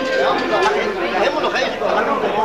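Many people talking at once: steady, loud, overlapping chatter of a group seated around tables.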